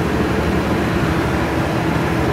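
Cincinnati mechanical plate shear running idle, its drive motor and flywheel making a steady hum with no cutting stroke.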